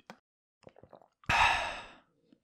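A person's satisfied sigh after a drink of ice water, starting about a second in and tapering off. A few faint small clicks come before it.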